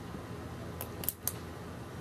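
A few quick hand claps about a second in, over steady low background noise.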